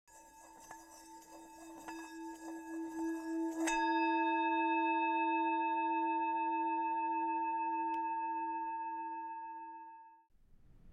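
Intro logo sound effect: a low bell-like ringing tone swells under scattered soft clicks, then a sharp strike at about three and a half seconds adds several higher ringing tones. The whole chord then slowly fades away.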